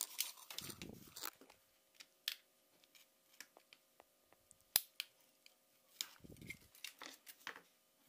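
Small clicks and scrapes of plastic and metal as a small button circuit board and its flex cable are pried out of a Blackview BV6000 rugged phone's frame with a utility-knife blade and fingers. One sharp click about three-quarters of the way through is the loudest, with a couple of short low bumps from handling the frame.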